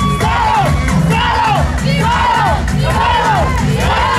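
A crowd shouting and chanting in rhythm, rising-and-falling cries about twice a second, over the steady beat of batucada drumming.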